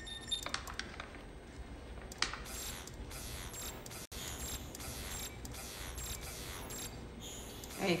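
Computer-interface sound effects from a TV drama: a run of sharp clicks, mechanical ratcheting and short whooshing sweeps as an on-screen 3D photo reconstruction zooms and moves, with a brief break about four seconds in. They are effects added by the show; the real Photosynth software makes no such sounds.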